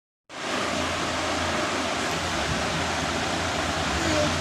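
A moment of silence, then a steady rushing hiss with a low hum beneath it, starting abruptly a fraction of a second in and holding even throughout.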